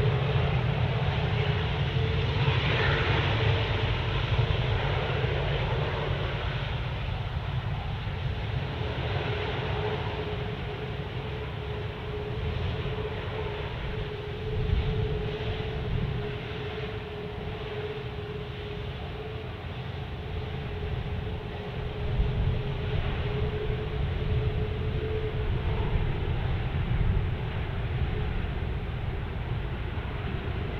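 Airbus A380-841's Rolls-Royce Trent 900 engines at taxi power as the jet taxis, a steady whine over a low rumble; the whine fades near the end.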